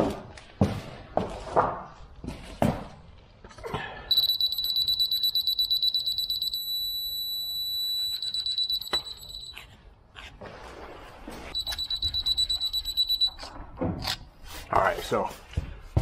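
Laser level receiver on a grade rod beeping: rapid high-pitched beeps, then a steady tone for about a second and a half, then rapid beeps again, with another run of rapid beeps a few seconds later. The steady tone means the receiver is on the laser's grade line; the fast beeps mean it is off grade.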